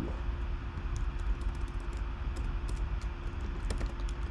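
Computer keyboard typing: scattered, irregular keystrokes as a file name is typed, over a steady low hum.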